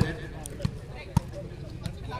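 A volleyball thudding sharply three times in about a second and a half, the middle thud the loudest, as the ball is played or bounced.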